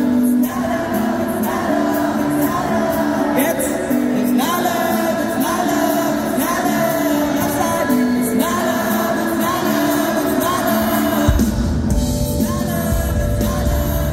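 Live pop band playing with a sung melody, the audience singing along. About eleven seconds in, the bass and drums come in fully.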